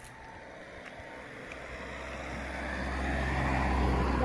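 A road vehicle approaching, its engine hum and tyre noise growing steadily louder, most of all in the last two seconds.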